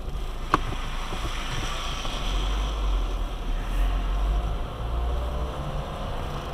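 Car driving on a wet road, heard from inside the cabin: low engine and road rumble with tyre hiss off the wet asphalt, and a single sharp click about half a second in.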